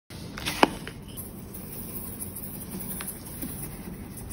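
Fine coloured sand poured from a small jar onto a sheet of paper, a soft steady patter. A sharp click stands out just over half a second in, with a few fainter ticks later.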